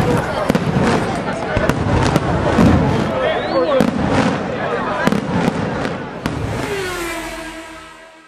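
Fireworks going off in a string of sharp bangs and crackles over crowd voices, with a short whistle about three and a half seconds in. Near the end a held musical chord rings on as the sound fades out.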